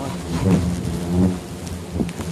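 A swarm of hornets buzzing around their disturbed nest in a low, steady drone, with a rumbling noise under it.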